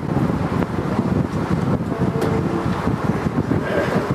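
Loud, rough rumbling noise like wind buffeting a microphone, with no clear pitch.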